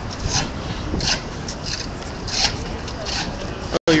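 Rubbing and scraping of a handheld phone's microphone being handled, over a background of voices and street noise. The audio cuts out for a moment near the end.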